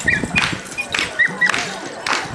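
A dog whining in several short, high, pitch-bending yelps over drum-driven dance music that keeps a beat of about two strikes a second.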